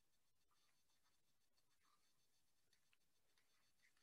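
Near silence, with very faint ticks from a stylus writing on a tablet.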